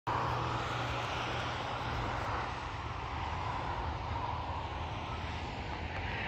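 Steady, distant engine drone with a low hum underneath.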